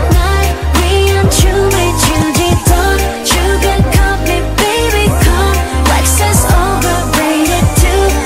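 K-pop song playing loudly, with a heavy bass line, a steady beat and a sung vocal line.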